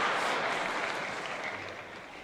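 Audience applause from a large live crowd, dying away gradually.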